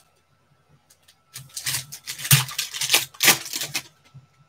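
Foil trading-card pack wrapper being torn open and crinkled by hand: a dense crackling rustle that starts about a second and a half in and stops just before the end.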